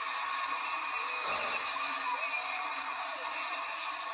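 Playback of a cheerleading competition video: a steady wash of arena crowd noise with the routine's music faintly under it.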